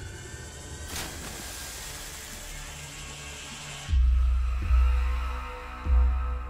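Horror trailer score: a low, tense hazy bed with a brief whoosh about a second in, then deep bass booms starting about four seconds in.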